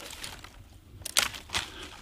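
Rustling and a few sharp crackles of dry twigs and leaf litter being disturbed, the loudest snaps about a second in and again half a second later.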